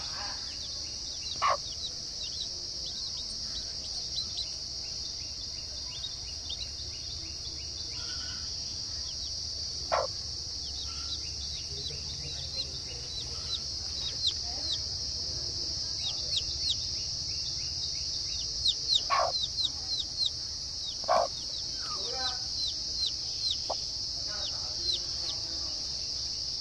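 Chicks peeping in quick, short, falling chirps, sparse at first and much more frequent in the second half, over a steady high insect buzz like crickets. A few brief, louder clucks from the hen stand out, two of them close together near the end.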